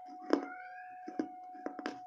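Crunchy bites into a thick piece of baked clay saucer: a sharp crunch about a third of a second in, another about a second in, and two close together near the end. A short high gliding squeak follows the first crunch, over a steady faint hum.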